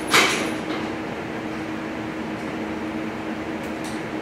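Steady low background hum with one fixed tone, and a short rush of noise right at the start; the motorcycle engine is not yet running.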